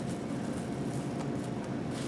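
Steady low background hum of the room, with a few faint small clicks of plastic miniatures and packaging being handled on the table.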